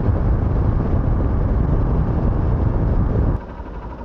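Riding noise from a Hero Xpulse 200 under way: rushing wind over the camera mixed with the single-cylinder engine running. A little over three seconds in, it drops suddenly to a much quieter, steady engine sound.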